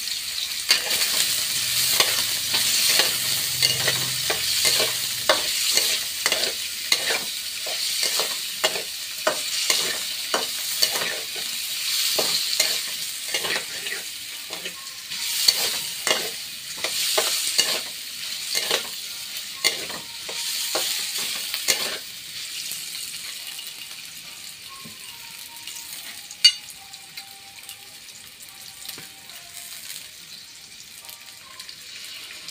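Food deep-frying in a wok of hot oil, sizzling steadily, while a metal spatula repeatedly scrapes and knocks against the wok as the pieces are stirred. The stirring stops about two-thirds of the way through, leaving the oil sizzling more quietly, with one sharp click near the end.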